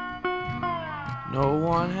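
Song music: guitar accompaniment with a melody line that glides down in pitch and then sweeps back up, and singing entering near the end.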